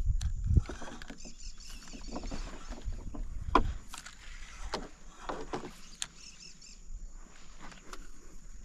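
Scattered knocks and bumps on a small fishing boat, over a low wind rumble on the microphone that is strongest in the first second.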